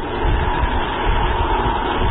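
Steady, loud rushing noise of an Agni-III ballistic missile's solid-fuel rocket motor as the missile climbs after launch.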